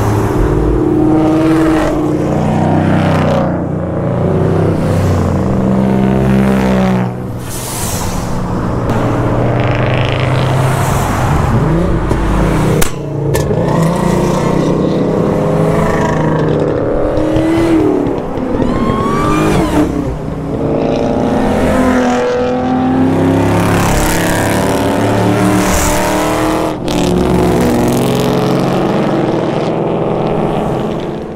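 A string of cars passing one after another at speed, their engine notes climbing and falling as each goes by, with a rush of tyre and wind noise at each pass.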